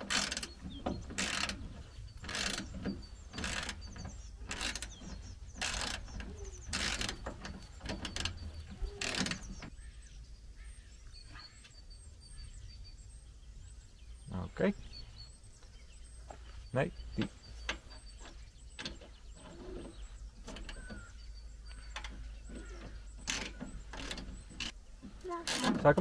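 Socket ratchet wrench clicking as bolts are tightened at the front of a van, about two ratcheting strokes a second for the first ten seconds, then only a few scattered clicks. Faint bird chirps in the background.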